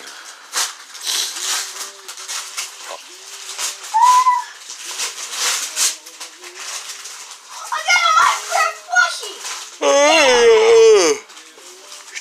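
Wrapping paper crinkling and tearing as gifts are unwrapped, in a run of short crackles. Near the end a child's voice calls out, the loudest sound.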